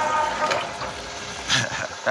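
Hole saw in a milling machine cutting through a metal mace head: a steady grinding hiss, with a ringing tone in the first half second and a louder burst about a second and a half in.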